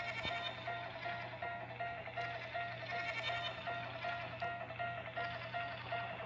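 Overlapping logo intro music from several stacked studio logos, with a short high tone repeating about twice a second over a steady low hum.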